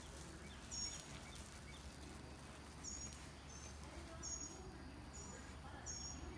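Faint, short, high-pitched chirps from a bird, repeating roughly once a second.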